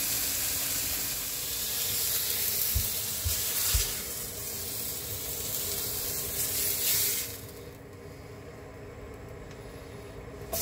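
Pork chops sizzling in a frying pan on a gas hob, a steady hiss that drops away suddenly about seven seconds in, with a few soft knocks a few seconds in.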